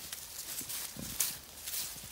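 Footsteps crunching irregularly through dry pine needles and leaves, with a sharper crack a little past the middle.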